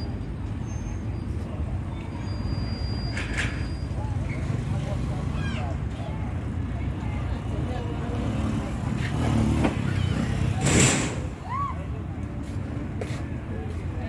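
Play-park ambience: a steady low rumble with scattered distant children's calls and chatter, and a louder rushing hiss about eleven seconds in.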